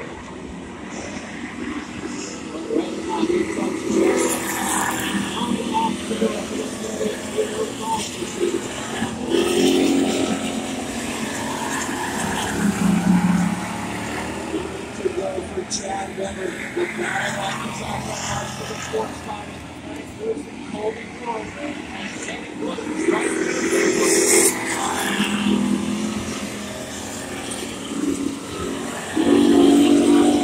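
Stock race car engines running around a dirt oval track, mixed with indistinct voices from the crowd and a PA announcer.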